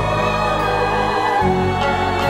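Large choir singing a held passage over orchestral accompaniment, the low notes shifting about one and a half seconds in.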